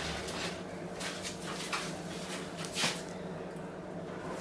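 A few soft crinkles and knocks of a cling-film-wrapped half melon being picked up and handled, the clearest about three seconds in, over a faint steady hum.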